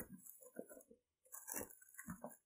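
Faint handling of a cardboard shoe box and tissue paper: short irregular scrapes and knocks, with a louder papery rustle about a second and a half in.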